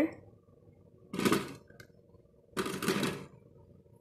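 Peeled cassava pieces being set into the metal inner pot of a rice cooker: two short bursts of clatter and scraping, about a second and a half apart.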